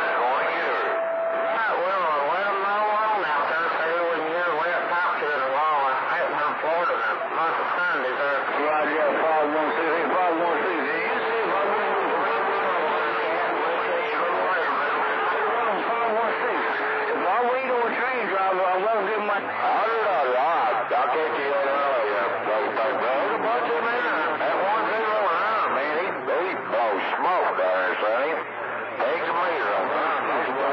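CB radio receiving channel 28 skip: several distant voices talking over one another through the static, too garbled to make out. A steady whistle, typical of carriers beating against each other, sounds briefly at the start and again from about nine to sixteen seconds in.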